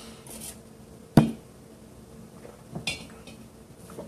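An empty stemmed drinking glass set down on a table with one sharp knock about a second in, followed by softer handling noises.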